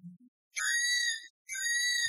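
Two steady high-pitched ding-like tones, each just under a second long, the second following about a second after the first.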